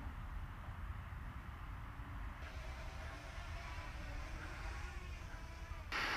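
Faint, steady low rumble of wind on the microphone. About two seconds in, the faint hum of a distant small electric propeller aircraft joins it, a thin pitched whine that wavers slightly.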